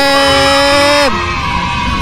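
A man's voice drawing out one long, steady call, the name "Z", which cuts off a little after a second in; fainter background sound follows.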